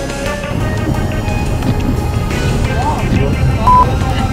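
Car driving on a snow-covered road, heard from inside the cabin as a dense low rumble of engine and tyres, with a short steady beep near the end.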